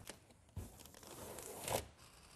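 Sheathing tape being laid along a horizontal seam of Tyvek HomeWrap housewrap. A faint noise starts about half a second in, grows louder and stops just before the end.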